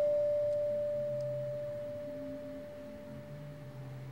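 A single pure, sine-like electronic keyboard note held and slowly fading out over about four seconds.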